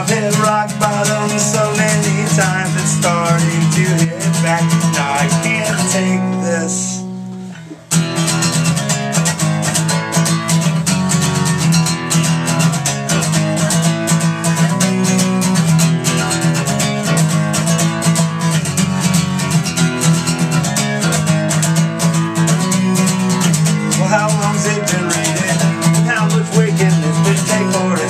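Acoustic guitar strummed through a live PA. About six seconds in, a chord is left ringing and dies away. Near eight seconds the strumming comes straight back in at full level and runs on steadily.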